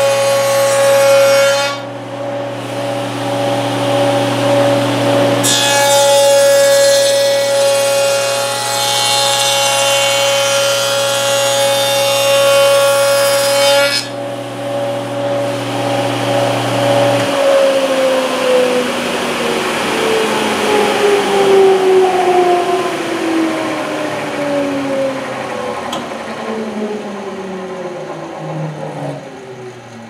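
Table saw with a stacked dado set running at speed, cutting a rabbet along the edge of a wooden board in two passes: one pass ends about two seconds in, and a second runs from about five to fourteen seconds. The saw is then switched off and its whine falls steadily in pitch as the blade spins down.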